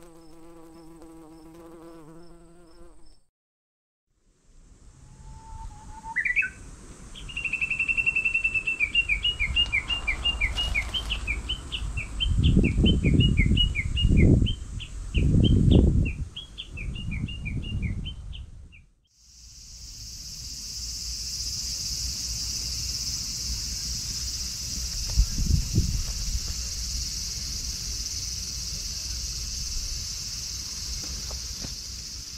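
A short held tone at the start, then a bird calling in a long rapid series of high chirps, with wind gusts rumbling on the microphone. After a cut, a steady high insect drone.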